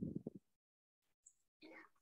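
Mostly near silence on a video call, broken by a brief faint voice at the very start and a faint breath-like sound just before speech resumes.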